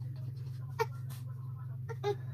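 A baby making short, high little vocal sounds, once about a second in and again near the end, over a steady low hum.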